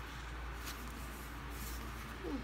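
A paper booklet being handled, with faint rustling and light paper ticks and a brief rustle near the end, over a steady low hum.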